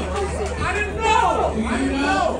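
Several people talking at once, unclear chatter with no single clear voice, over a steady low hum.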